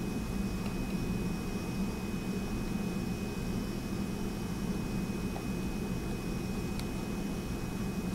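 Steady room noise: a low hum under an even hiss with a thin, steady high whine, and a faint click near the end.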